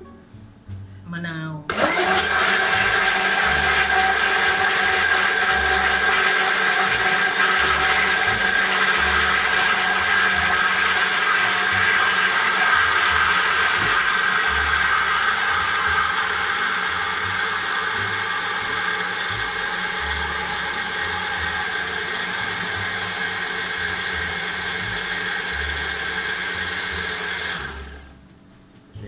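Countertop electric blender switched on and running steadily for about 25 seconds, blending a thick, mayonnaise-like salad dressing, then switched off near the end. Its sound eases slightly about halfway through.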